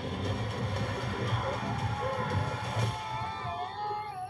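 Action-trailer soundtrack: dense low rumbling sound effects under music, with a wavering pitched sound rising and falling from about a second and a half in.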